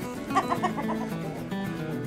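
A chicken clucking: a quick run of about six short clucks in the first second, over steady background music.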